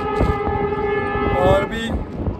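Train horn sounding one long, steady blast that stops about a second and a half in, with wind buffeting the microphone.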